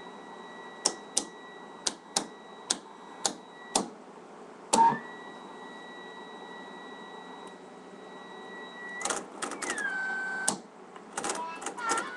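Navy AN/WRR-3A tube radio receiving set putting out a steady whistle tone. A run of sharp clicks breaks through it in the first few seconds, with a louder crackle near five seconds. More clicks come in the last few seconds, as the whistle slides down in pitch.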